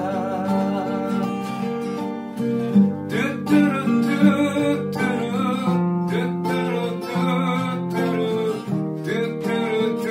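Steel-string acoustic guitar with a capo, plucked chords and melody notes ringing on, the chords changing every second or so.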